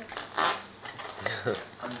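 A few light knocks and clatters of a small plate and hands on a plastic high-chair tray as a toddler grabs at cake. The loudest knock comes about half a second in and another near the middle.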